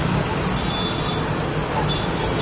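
Steady street traffic noise, a continuous low hum of passing vehicles.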